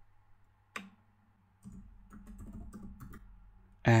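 Typing on a computer keyboard: a single click just under a second in, then a quick run of key clicks for about two seconds.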